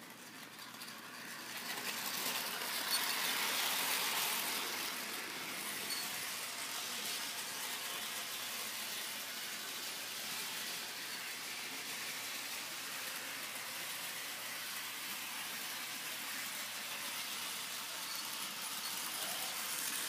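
Bachmann Gordon HO-scale electric model train, the locomotive pulling one coach along the track: steady motor and wheel running noise. It swells over the first few seconds as the train gets under way, is loudest about four seconds in, then runs on steadily.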